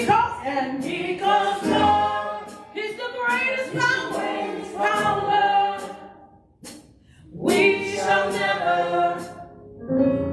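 A church praise team of women singing a worship song together into microphones, with a brief pause between phrases about two-thirds of the way through.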